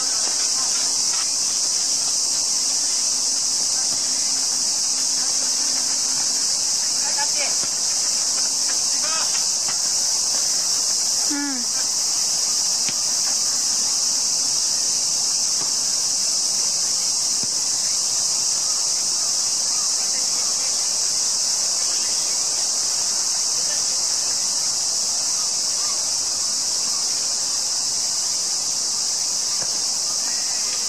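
Loud, steady, high-pitched drone of a summer insect chorus, unbroken throughout, with a few faint distant shouts, one near the middle.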